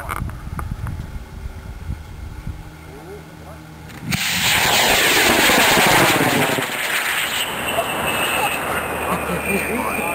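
AMW L-1400 Skidmark high-power rocket motor igniting about four seconds in: a sudden loud roar as the rocket lifts off, whose sound sweeps and phases and slowly fades as it climbs away.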